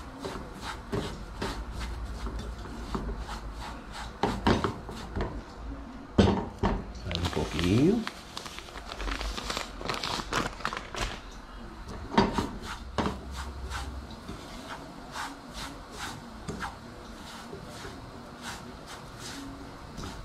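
Cassava flour being stirred and scraped around a nonstick frying pan with a silicone spatula as it toasts into farofa, with sharp taps of the spatula against the pan. Around the middle the plastic bag of flour rustles and crinkles as it is handled over the pan.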